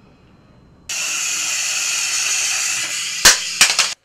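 A steady, loud hiss that starts abruptly about a second in and runs for about two seconds, followed near the end by three or four sharp cracks.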